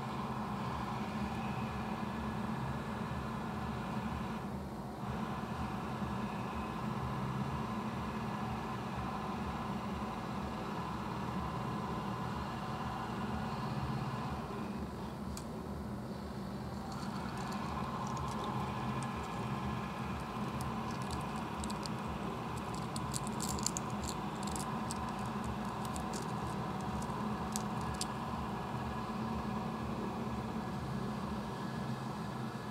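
Steady low hum and hiss, with a scatter of faint light clicks in the second half.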